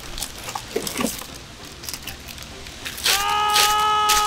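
Faint crinkling of a plastic bag wrapped around a car taillight as it is handled and lifted from its box, then about three seconds in a steady held tone with several overtones, louder than the crinkling, lasting about a second and a half.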